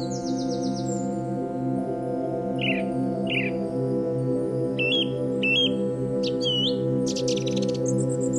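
Slow ambient music with a sustained synth drone, laid over birdsong: scattered short chirps, mostly in pairs, and a couple of rapid trills, one at the start and one near the end.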